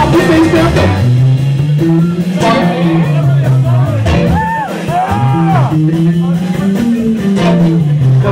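Live blues-rock band playing: electric guitar notes bent up and down over bass guitar and drums, with the guitar bends standing out about halfway through.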